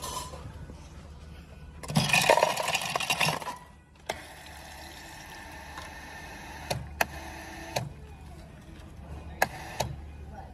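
Drink fountain dispensing into a paper cup. A loud rushing burst comes about two seconds in, then a steadier pour with a few sharp clicks scattered through the second half.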